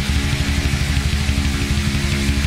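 A hard rock band playing live: guitar over a held low note, with a rapid, even pulsing beat that starts right at the beginning.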